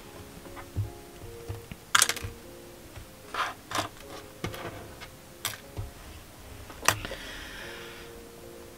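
Soft background music with about half a dozen light, sharp taps and clicks scattered through it, as hands handle and smooth crocheted fabric on a hard tabletop.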